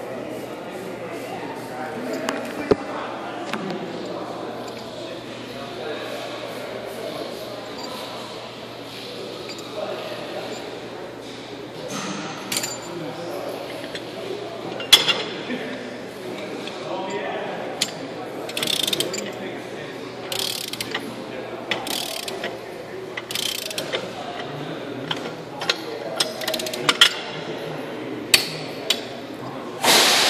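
Ratcheting torque wrench clicking as a truck hub's wheel-bearing adjusting nut is run down to 50 foot-pounds. Sharp clicks and metal knocks come often through the second half, over a steady background rumble.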